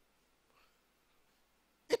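Near silence: room tone during a pause in a man's speech, with a faint brief sound about half a second in. His voice comes back at the very end.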